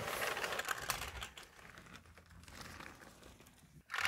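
A toy model car's wheels rolling and scraping across carpet as a hand pushes it: a scratchy rustle with fine clicks, loudest for the first second and a half, then faint.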